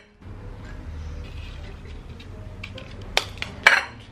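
A salt canister and its metal lid being handled on a countertop, with two sharp clinks about half a second apart near the end.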